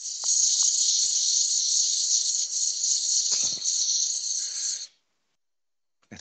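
Abrasive paper hissing against the inside of a wooden goblet turning on a lathe, a steady high hiss that cuts off suddenly about five seconds in.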